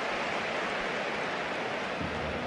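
Steady football stadium crowd noise, an even hubbub of many voices with no single voice standing out.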